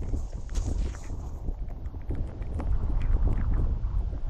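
Wind buffeting the microphone with a constant low rumble, over scattered footsteps squelching and splashing on a waterlogged, muddy road.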